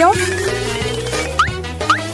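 A long squeaky tone rises slowly, followed by three quick upward chirps about half a second apart. These are squeaky comic sound effects laid over background music with a steady beat.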